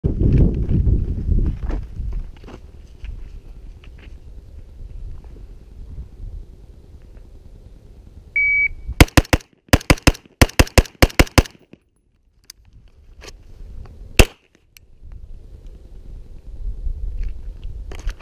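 An electronic shot timer beeps once. About half a second later an AR-15-style rifle in 5.56 fires a fast string of shots lasting about two and a half seconds, then after a short pause a 9 mm Glock pistol fires a single shot. Wind rumbles on the microphone at the start and end.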